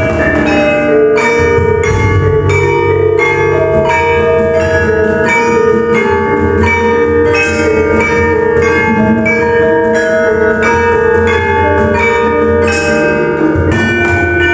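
Javanese gamelan ensemble playing: bronze keyed metallophones (saron and demung) struck with mallets in an even, steady pulse of ringing notes, with kettle gongs (bonang) and the deep, long ring of hanging gongs underneath.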